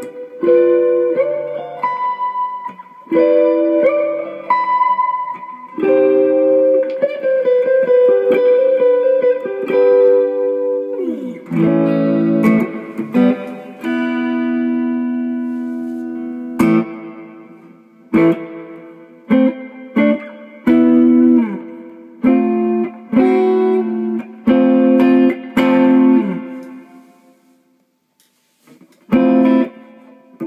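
Electric guitar played through a homemade reverb pedal that is switched on: chords and short phrases that stop and start, with one chord left ringing and slowly fading in the middle, and a fade to near quiet shortly before the end.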